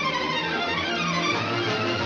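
Orchestral music led by violins, with several melodic lines gliding up and down together.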